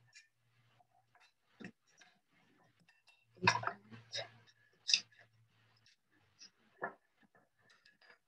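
Kitchen work: a few scattered sharp knocks and clatters of a knife, utensils and dishes, the loudest about halfway through. The sound comes over a loudspeaker and is picked up again by a room microphone.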